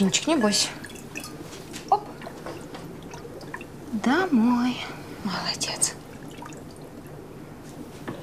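Water dripping and splashing as a small aquarium net carrying a fish is lifted from a glass fishbowl and dipped into a home aquarium, with a sharp drip about two seconds in. A soft voice makes a few brief whispered sounds in between.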